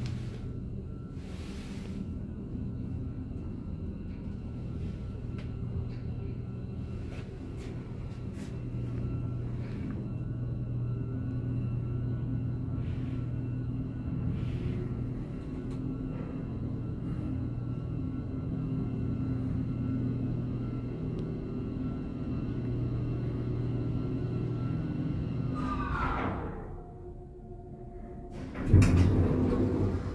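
Cab of a 1978 SÛR SuperSûr traction elevator riding up: a steady hum and rumble from the machinery. About 26 seconds in, a falling whine as the car slows to stop at the floor, then the cab's sliding door opens with a loud clatter near the end.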